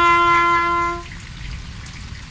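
Bugle call: a single long held note that stops about a second in, followed by a pause in the call.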